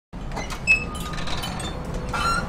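Small bell hung on a door ringing as the door is pushed open: a bright jingle that peaks about two-thirds of a second in and rings on, fading, over a low steady hum.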